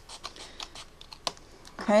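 Close To My Heart fine-tip craft scissors snipping along the edge of folded cardstock: a run of light, irregular clicks, with one sharper snip a little past halfway.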